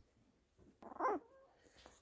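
A young labradoodle puppy gives one short whimpering cry about a second in.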